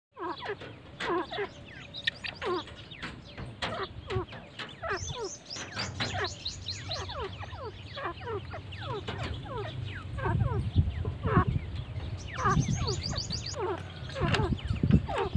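Gray francolins and their chicks calling, a dense run of short falling chirps several times a second. A low rumble joins about ten seconds in.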